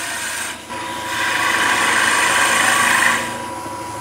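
Skew chisel cutting a small lime spindle on a wood lathe: a hissing shaving sound that gets louder from about a second in until just past three seconds, over the lathe's steady running with a thin steady tone.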